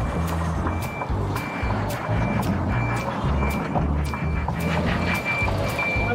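A Scania lorry's reversing alarm beeping at a steady pace of about one and a half short, high beeps a second while the lorry backs up, over background music with a bass line.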